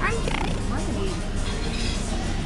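Amusement arcade din: game machines' music over a steady background noise, with a brief high falling voice sound right at the start.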